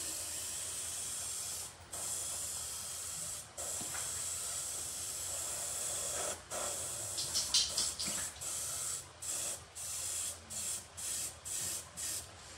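Iwata HP-BC Plus airbrush spraying paint with a steady hiss, broken twice by brief pauses. About halfway through it turns to many short puffs a fraction of a second apart, the trigger worked on and off.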